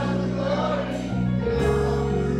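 Gospel music in a church: a group of voices singing over steady held chords.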